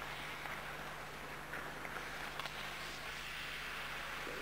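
Hockey skate blades scraping and carving across ice in swells, with a few sharp clicks of stick on puck around the middle, over a steady low hum.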